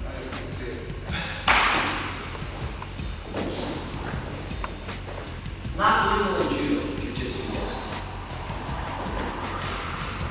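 A sudden thud about a second and a half in, from partners grappling on padded training mats, over background music.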